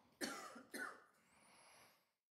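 Two short coughs about half a second apart, picked up by a meeting-room microphone.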